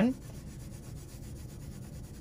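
A Crayola oil pastel rubbed back and forth across paper with light pressure, a soft, steady scratching of quick strokes.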